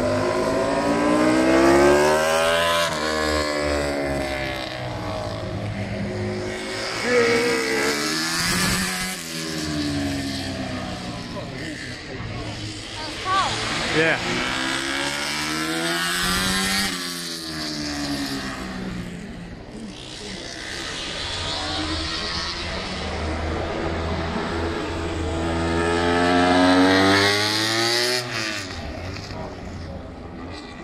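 Racing motorcycles running past one after another, loud, with about four passes; each engine note rises as the bike approaches and drops as it goes by.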